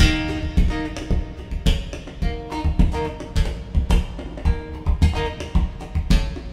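Steel-string acoustic guitar played percussively in a solo passage: picked and strummed notes ring over a steady beat of low thumps, about two a second, from hits on the guitar body.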